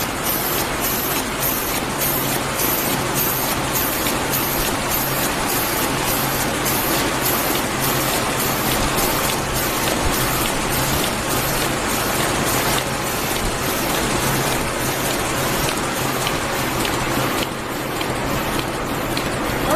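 ZF-510 automatic envelope making machine running at a raised speed: a loud, steady mechanical clatter of rollers, feeders and folding mechanisms, with an even, quick cycling beat over a low hum.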